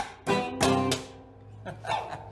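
Electric guitar and resonator guitar playing the last strummed chords of a ragtime blues tune. The chords ring out and fade about a second in, and a short laugh follows near the end.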